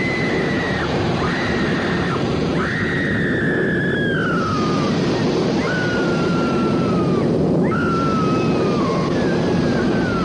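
Harsh distorted noise, the outro of a goregrind demo track, with a high whistling tone over it. The tone holds for about a second at a time, sliding slowly down in pitch, six times.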